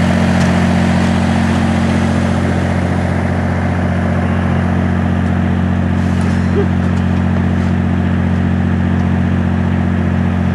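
A machine running steadily with a loud, unchanging low hum, like an engine idling.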